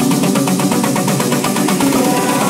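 Handpan played live in a fast, even run of hand strikes over an electronic dance beat.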